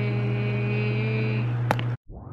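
A woman's voice holding one long, even note for about a second and a half over a steady low hum, then a single sharp click near the end.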